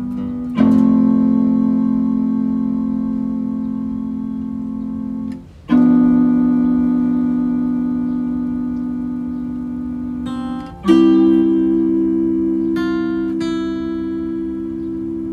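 Guitar chords struck and left to ring, three times about five seconds apart, each fading slowly; a few single high notes are picked over the last chord near the end.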